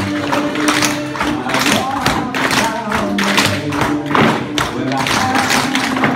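Many tap shoes striking a wooden floor together in ragged unison, a dense run of taps a few a second, over recorded music.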